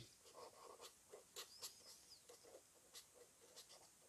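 Faint scratching of a pen writing on paper, in short irregular strokes.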